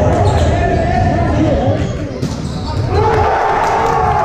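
Volleyball rally in a gymnasium: ball contacts and players' calls and shouts, echoing in a large hall.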